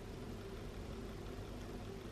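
Quiet, steady room noise: a low hum under an even hiss, with no distinct events.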